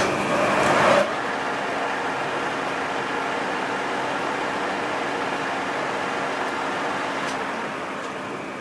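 Metal lathe running with the chuck spinning: a steady mechanical whir and hum, with a louder rush of noise in the first second before it settles to an even level.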